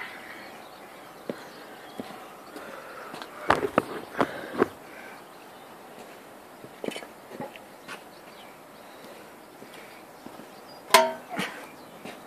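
Footsteps and scattered knocks of someone moving about on gravel, with a sharper clack and a brief ringing tone about eleven seconds in as a handsaw is picked up.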